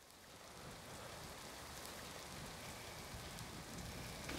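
Faint, even patter-like hiss, like light rain, fading in from silence and slowly growing.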